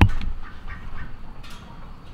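A single low thump right at the start, then a quiet barn background with a few faint, short poultry calls.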